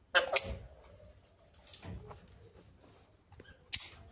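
Caged Alexandrine parakeets calling: a loud, shrill squawk just after the start, a faint short call near the middle, and a sharp, very high screech near the end.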